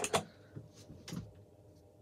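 A few light clicks and taps of a small metal pipe tool being handled, the sharpest at the very start and softer ones scattered through the rest.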